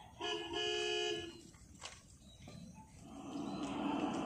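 A horn sound effect from the mime's backing track, tooting twice: a short toot and then a longer one. A sharp click follows, and a rushing noise rises in the last second.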